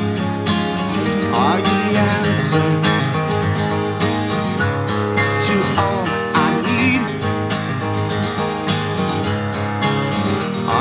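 Two acoustic guitars playing together, strumming chords through an instrumental passage.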